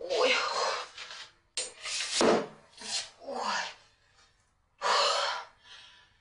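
A woman's voice making short wordless gasps and exclamations in several bursts with short pauses between them, the pitch often sliding down.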